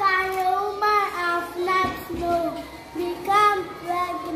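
A young child singing solo in a high voice, with notes held for a moment and short breaks between phrases.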